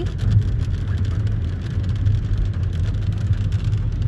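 Steady low rumble of a car driving on a wet road, heard from inside the cabin: engine and tyre noise.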